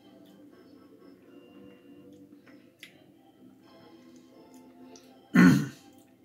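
A man clears his throat once, a short loud burst about five seconds in, over faint background music.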